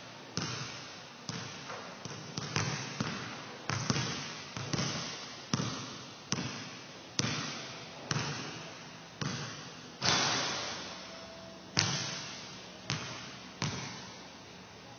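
A leather basketball bouncing on a gym floor and striking the hoop during rapid free-throw shooting. The sharp knocks come about once a second, some in quick pairs, and each rings on in the gym's echo.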